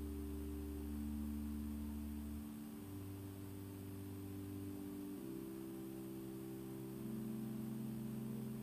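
Church organ playing soft, slow held chords, the bass note moving to a new pitch every two to three seconds.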